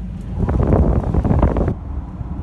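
An RV's ceiling-mounted roof air conditioner running with a steady low hum. From about half a second in, its air stream buffets the microphone held up to the vents, giving a loud rush of wind noise for about a second.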